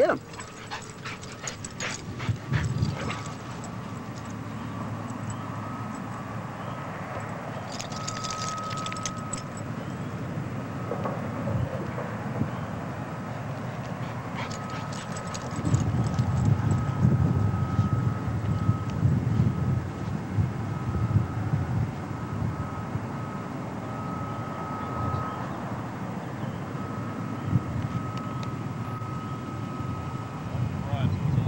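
Two dogs play-fighting, with dog vocalisations and a few sharp clicks in the first seconds; from about halfway through a low rumbling noise takes over.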